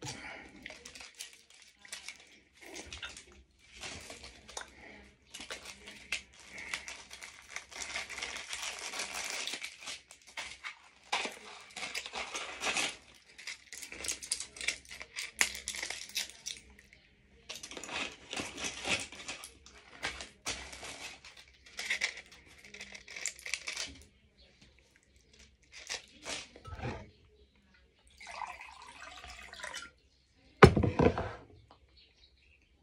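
Crinkling and tearing of a small foil-and-paper medicine packet being handled and opened: an irregular crackle with short pauses.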